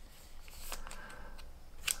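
Faint handling of Pokémon trading cards: a card in a plastic sleeve rustling in the fingers and being laid down on a stack of cards on a playmat, with a light tap near the end.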